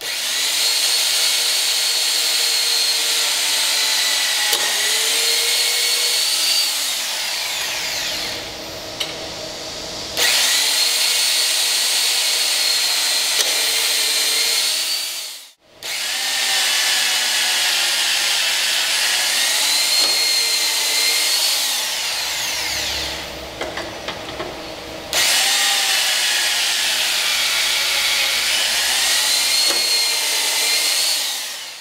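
AGP T14 450 W electric tapping machine running under load, cutting threads in aluminium plate with M6 and then M16 taps. Its motor and gearbox give a steady whine that wavers in pitch. The sound drops briefly twice, and about halfway through it stops dead and starts again.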